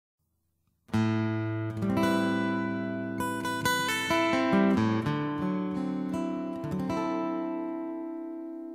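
Music: an acoustic guitar picking out a melody of single notes that ring and fade, starting about a second in after silence.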